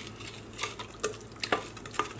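A utensil stirring a watery slurry of wood ash and clay in a large glass jar, a wet swishing broken by several light, irregular knocks of the utensil against the glass.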